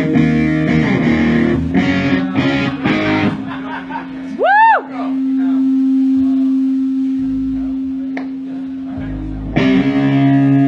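Live punk band playing with distorted electric guitars. Rhythmic chords for the first few seconds, then one note swoops up and back down, and a single note is held ringing with a few low bass notes under it. The full band comes crashing back in near the end.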